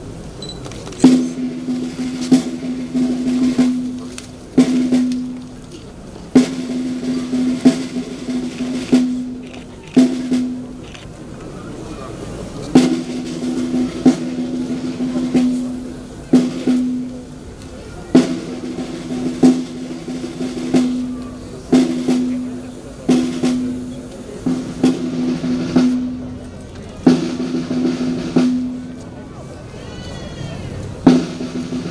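Snare drum playing a series of rolls, each opening with a sharp accented stroke and lasting one to two seconds, with short breaks between them. This is the steady ceremonial drumming that accompanies a wreath-laying.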